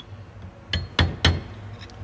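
Three quick light metallic taps with a short ring, a flat steel bar knocking down on the gearbox shaft inside its cast housing to seat it on the bearing.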